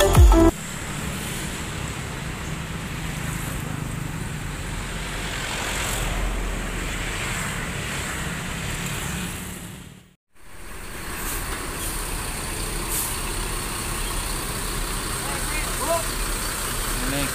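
Diesel coach bus idling, a steady low rumble amid terminal background noise. The sound cuts out completely for a moment about ten seconds in, then resumes.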